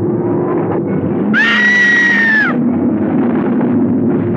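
A woman's high scream, lasting about a second and starting just over a second in, over low, sustained film music.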